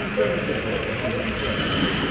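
Indistinct chatter of several people talking at once, steady throughout.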